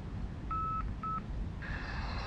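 Sony digital voice recorder giving its button beeps as it is operated by hand: one longer electronic beep, then a short one about half a second later.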